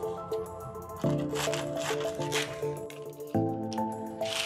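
Background music of sustained chords that change about one second in and again near the end. Faint crisp rustling and clicks of parchment paper being pulled and cut with scissors are heard over it.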